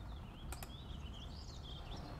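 Faint bird calling in the background, a thin warbling tone wavering up and down, with two quick clicks about half a second in.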